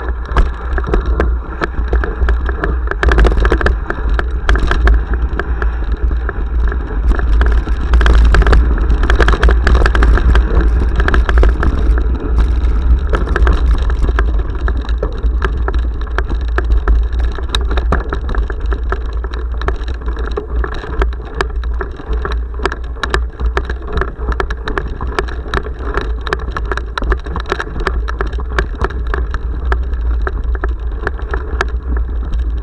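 Mountain bike ridden fast over a rough dirt trail, picked up by a handlebar-mounted action camera: a heavy, steady rumble of wind and vibration on the microphone, with many sharp rattles and knocks from the bike over the bumps. It is loudest in the first half.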